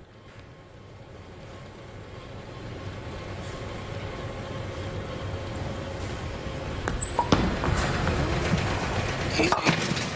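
Low rumble of a bowling ball rolling down the lane, growing steadily louder, then a sharp crack of ball on pins about seven seconds in. It is a spare attempt at the 4-7 that chops the 4-pin and leaves the 7 standing.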